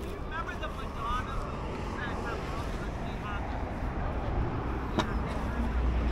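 Open-air market ambience: scattered distant voices over a steady low rumble, with one sharp click about five seconds in.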